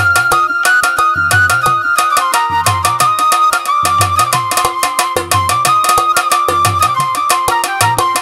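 Instrumental break in a Tamil Ayyappa devotional song: tabla playing a fast repeating rhythm under a keyboard melody in long held notes, over a steady drone.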